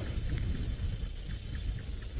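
Wind buffeting the microphone: an uneven low rumble with a faint hiss above it.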